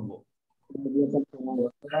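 Speech: a man's voice trailing off, then after a short pause a low, muffled voice with no treble speaking in a few short pieces, like a student answering over an online call.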